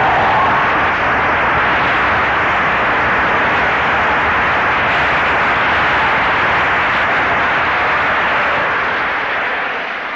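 A large audience applauding in a long, steady round that dies down near the end.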